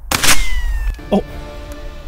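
A single shot from a Marlin .22 Long Rifle rifle, a short sharp crack just after the start. A thin whine follows, falling in pitch for about a second, which the shooters take for the bullet tumbling as it leaves the pumpkin.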